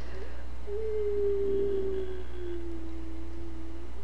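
A steady low hum with a faint pure tone held for about three seconds, sliding slightly lower in pitch.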